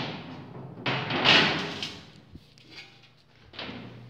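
Metal clattering and scraping on a steel checker-plate floor, loudest about a second in, with fainter knocks after. Under it, a low steady machinery hum.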